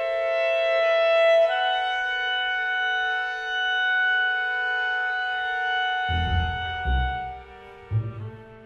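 Contemporary chamber music for clarinet, violin, viola and double bass: clarinet and bowed strings hold long, overlapping sustained notes. About six seconds in, the double bass enters with two heavy low notes as the high lines fade.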